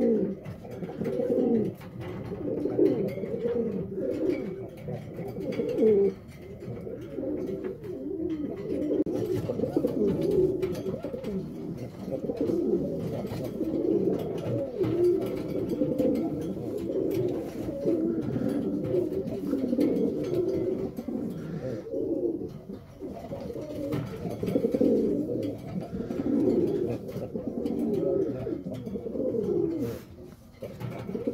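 Buchon Rafeño pouter pigeon cooing: low coos, one after another with hardly a break, rising and falling in pitch.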